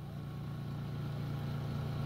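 Steady low hum of a running household appliance.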